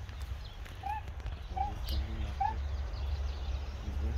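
An animal calling three times, short calls about a second apart, each rising then falling in pitch, over a steady low rumble.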